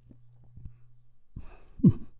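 A man's soft breathy sigh about a second and a half in, ending in a brief voiced sound. Before it there is only a faint steady low hum and a few faint clicks.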